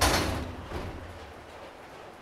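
A sudden loud bang right at the start, with a low rumble that fades away within about a second.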